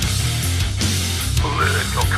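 Recorded heavy rock song playing loud and steady: distorted guitars, bass and drums, with a 90s metal rock feel. A high melodic line bending up and down in pitch comes in about one and a half seconds in.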